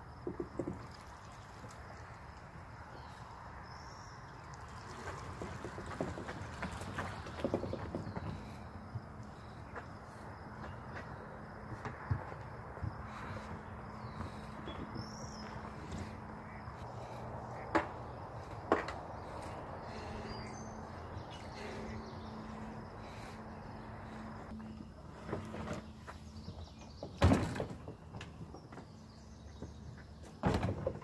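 Faint outdoor ambience: scattered bird chirps over a low steady hum, with occasional knocks and one loud thud near the end.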